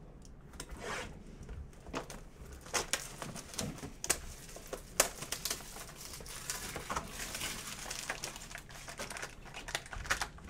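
Plastic shrink-wrap crinkling and tearing, with sharp clicks of cardboard, as a sealed Panini Spectra hobby box of trading cards is unwrapped and opened; the foil card packs inside rustle near the end.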